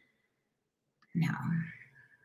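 Silence for about a second, then a woman's voice says "no."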